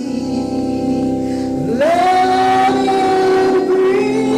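Gospel singing in a church with sustained accompaniment; a little before the middle, a voice slides up into a long held high note.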